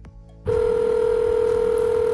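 A single steady telephone tone on an outgoing mobile call, starting sharply about half a second in and held evenly, heard as the call goes through.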